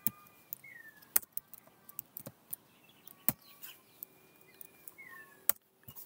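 Computer keyboard keystrokes: scattered sharp clicks, a few close together, as a word is typed.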